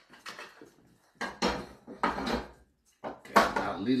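A metal utensil scraping and clinking against a pan and plate in three bursts of clatter, the loudest near the end.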